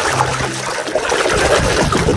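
Thick, foamy liquid sloshing and bubbling in a basin as a plastic toy is swished through it.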